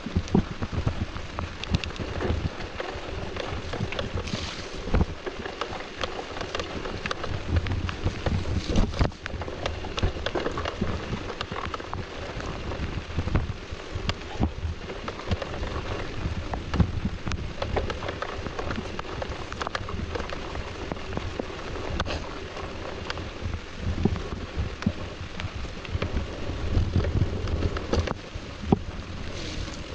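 Mountain bike riding down a wet dirt trail: a steady rushing noise of tyres and rain with a low rumble, broken by frequent clicks and knocks as the bike rattles over roots and rocks.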